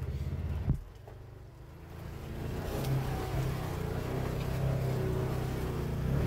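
Side-by-side engine running steadily, with a sharp click a little under a second in. After the click it drops quieter for about a second, then swells back up and holds a steady note.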